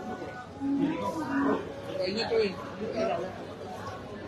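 Several voices talking over each other in a busy restaurant dining room, with no single clear speaker.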